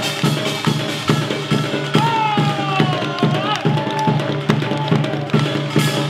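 Korean traditional music ensemble playing a steady beat of about two drum strokes a second over a sustained low tone. About two seconds in, a voice sings a long gliding phrase.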